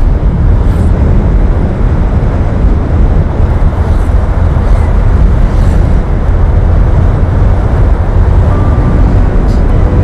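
Wind rushing and buffeting over an action camera's microphone on a moving scooter, a loud, steady low rumble with road and engine noise underneath.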